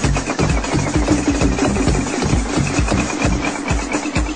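1990s electronic dance music from a continuous DJ mix: a fast, steady kick-drum beat under a high, repeating synth figure.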